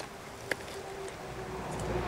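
A flying insect buzzing faintly and steadily, with a single sharp click about half a second in and a low rumble building in the second half.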